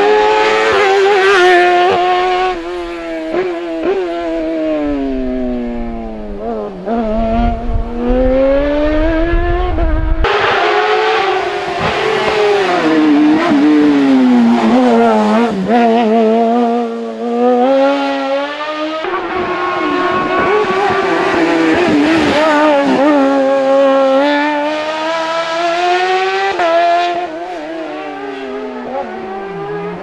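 Small race car's engine at high revs, its pitch sweeping down and rising again every few seconds as the car slows for the slalom cones and accelerates out, with abrupt jumps in the sound about a third and two thirds of the way through.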